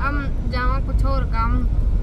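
Steady low rumble of a car driving, heard from inside the cabin, under a woman's voice.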